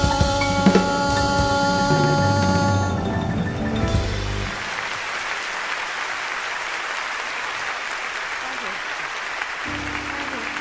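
A jazz band with drums holds the song's final chord for about four seconds and cuts off, followed by steady audience applause.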